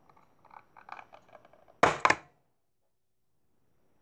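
Small clicks and scrapes of fingers working the ring-pull tab of a metal cat food can. About two seconds in comes a loud, sharp double crack as the tab snaps and breaks.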